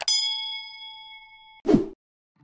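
Subscribe-button animation sound effects: a click, then a bell-like ding ringing with several tones and fading over about a second and a half, ending in a short whoosh near the end.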